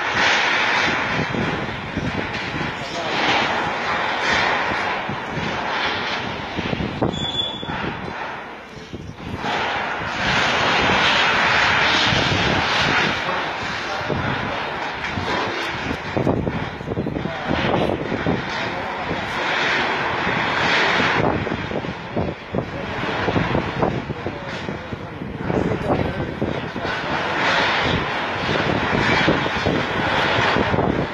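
Heavy earth-moving machine's diesel engine running under load while it demolishes a building, with irregular knocks and scraping throughout.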